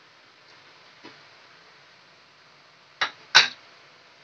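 A plate knocking twice on a hard surface near the end, two sharp clacks about a third of a second apart, after a fainter knock about a second in.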